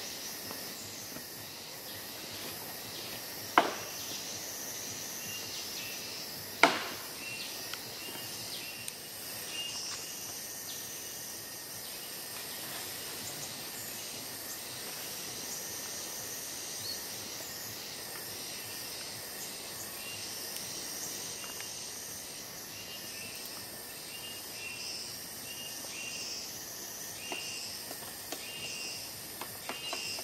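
Tropical rainforest insect chorus: a steady high buzzing with a long, thin high tone that drops out now and then, and short chirps repeating over it. Two sharp clicks stand out loudest, about three seconds apart near the start.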